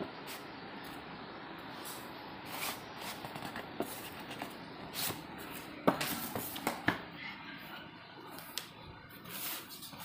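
Cardboard boxes being handled and slid about: rustling and scraping, with several light knocks and taps, the sharpest about six and seven seconds in.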